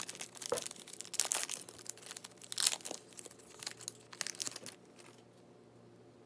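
Foil wrapper of a Topps Chrome Sapphire Edition trading-card pack being torn open and crinkled by hand: a run of crackling rips and rustles that stops about four and a half seconds in.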